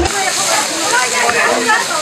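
Anchovies sizzling in hot oil in a frying pan, a steady hiss, with people talking over it.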